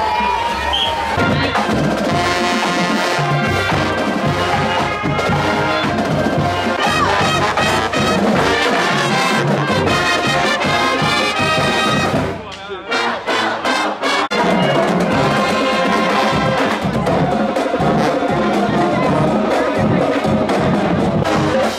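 College marching band playing a brass tune with sousaphones, trombones and drums. About twelve seconds in the band drops out briefly for a few short breaks, then plays on.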